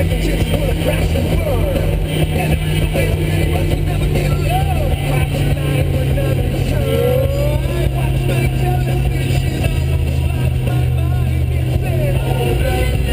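Motorboat engine running with a steady low drone as the boat moves along.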